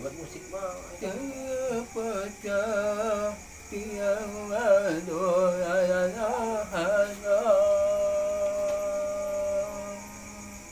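A man singing unaccompanied, his line wavering and bending in pitch, then holding one long steady note for the last couple of seconds.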